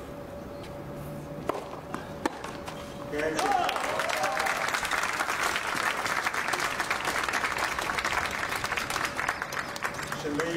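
Two tennis ball strikes from rackets, about a second apart, then spectators applaud from about three seconds in, with a voice calling out as the clapping starts. The applause carries on until the end.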